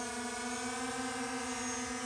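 Quadcopter drone hovering, its propellers giving a steady, even buzzing hum.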